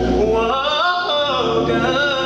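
A man singing a gospel song solo into a microphone, drawing out one long wordless run that climbs in pitch and then falls back.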